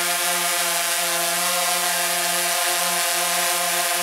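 DJI Phantom 3 Advanced quadcopter hovering close overhead: a steady, even hum from its four electric motors with the whirring hiss of the spinning propellers.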